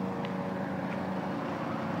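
Steady hum of a distant engine over outdoor background noise.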